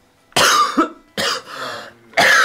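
A man in a choking coughing fit, with two hard, rough coughs about a second apart.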